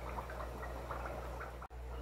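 Fish-room background: a steady low hum of aquarium equipment with faint water trickling and dripping. The sound breaks off for an instant near the end.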